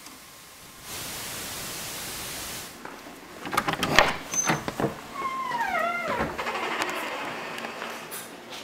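A cat meows once on a played-back VHS camcorder tape, the call falling in pitch. Before it there is about two seconds of tape hiss and then a few clicks and knocks.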